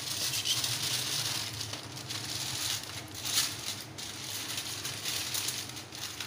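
Aluminium foil crinkling and rustling in irregular bursts as hands fold and crimp it closed around a joint of meat.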